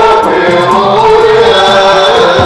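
A group of men singing a Swahili maulid chant in the Rast maqam, with a violin playing the melody along with the voices.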